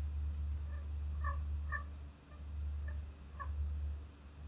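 A steady low hum with a few faint, short, high chirps scattered through it.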